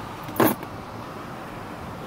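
Automatic car wash heard from inside the car: a steady rush of water and washing gear on the body, with one short loud slap about half a second in as the cloth wash strips hit the car.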